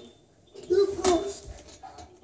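A girl's short voiced effort sound, starting about half a second in and lasting about half a second, with a sharp knock in the middle as she pulls over a home gymnastics bar.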